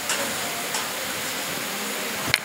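A steady, even hiss-like background noise with no distinct voices or events.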